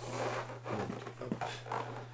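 Cardboard and polystyrene foam packaging being handled, with irregular scraping and rustling, over a steady low hum.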